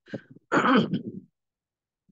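A man clears his throat once, a short rough burst about half a second in.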